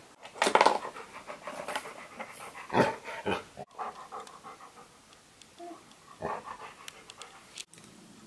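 A golden retriever panting close to the microphone in quick runs of breaths, louder in the first half and fainter later.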